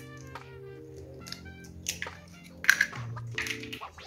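Soft background music with held notes, over a few short taps and cracks as a hen's egg is broken open into a small glass cup, the sharpest near the end.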